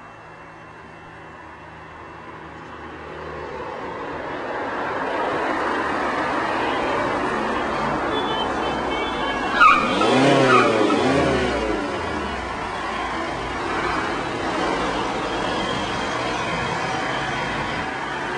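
Cars driving past on a narrow road: tyre and engine noise builds over several seconds. A car passes close about ten seconds in, its pitch dropping as it goes by, and passing-traffic noise carries on after.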